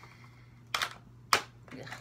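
Two sharp plastic clacks about half a second apart as the Spectre stock on a Nerf Stryfe blaster is swung out into place.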